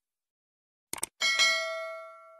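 Two quick mouse-style clicks about a second in, followed at once by a bright bell ding that rings on and fades: the click-and-notification-bell sound effect of a subscribe-button animation.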